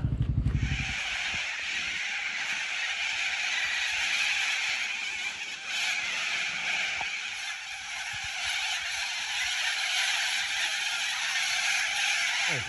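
A huge flock of cockatoos calling overhead, many birds at once making a dense, continuous din. In the first second a motorcycle engine is heard idling, then it cuts off.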